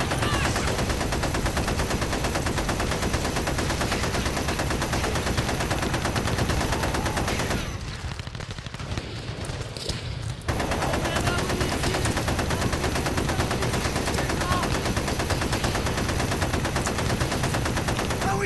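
Rapid, continuous gunfire of a firefight, automatic weapons and rifles firing shot after shot. It drops off for about three seconds near the middle, then resumes just as densely.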